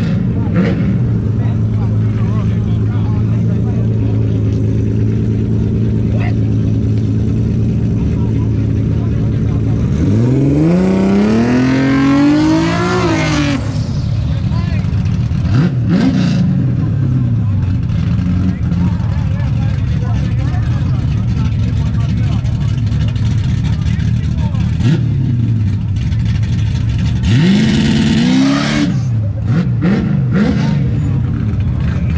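A drag car's engine idling, with one long rev a bit over ten seconds in that climbs and falls over about three seconds, a few short throttle blips after it, and another rev near the end.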